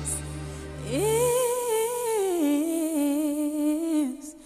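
A single voice sings wordless held notes. It scoops up into a long high note, then steps down to a lower one that it holds, over a low accompaniment note that stops about a second in.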